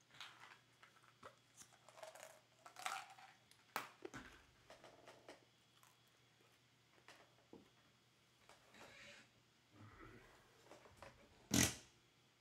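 Baseball trading cards and packs being handled and flipped through: scattered soft rustles, slides and light taps, with one louder sharp rustle near the end.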